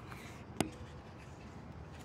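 Electric fuel pump running with a faint steady hum as it feeds the regulator, with one sharp click a little over half a second in.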